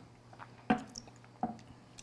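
Quiet sipping and wet mouth sounds of whiskey being tasted from a glass, with two short clicks about three-quarters of a second apart.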